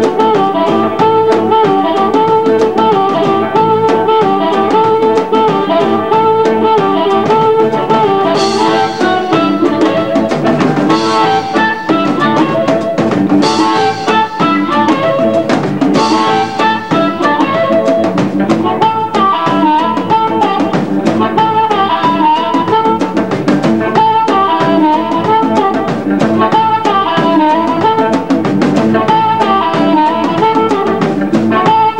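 Live blues band with an amplified harmonica in the lead, played cupped against a handheld microphone, its long held notes bending in pitch over electric guitar and a drum kit keeping a steady beat.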